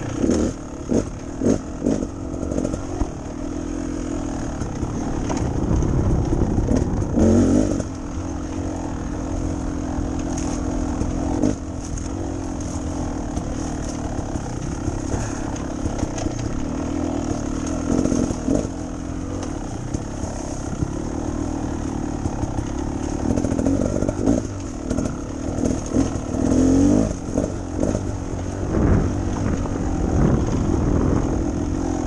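Beta Xtrainer two-stroke trail bike engine running as it is ridden, the throttle opened and shut over and over so the sound surges and dips, most choppily near the start and again in the last few seconds. Scattered knocks and rattles from the bike over rough ground.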